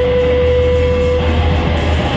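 Live blues-rock band playing: electric guitar over bass guitar and drums, with a held note that fades out about a second in while the bass carries on.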